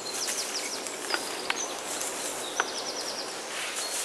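Woodland birds singing: scattered chirps and two quick trills, about half a second in and again near the three-second mark, over a steady rush of a small stream.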